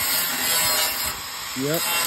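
Power tool cutting and grinding out rusted sheet steel from a car's rocker panel, a steady high hiss of metal being cut.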